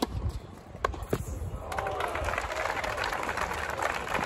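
A few sharp knocks in the first second, then applause and crowd chatter from spectators that swell up a little under two seconds in and carry on.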